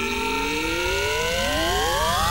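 Synthesizer riser in a trance mix: several tones gliding upward in pitch together, slowly at first and then faster, over a low steady rumble.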